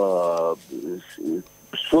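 Speech: a man's voice holding one long syllable that falls in pitch, followed by a couple of short syllables.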